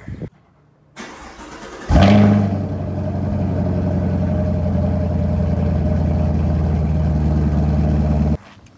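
The 2017 Camaro SS's 6.2-litre LT1 V8 starts: about a second of cranking, then it fires with a loud rev flare about two seconds in and settles into a steady idle through its stock mufflers.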